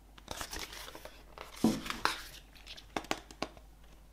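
Pages of a glossy printed album booklet being turned by hand: a run of paper rustling and crinkling, loudest about halfway through, with a couple of short sharp crackles near the end.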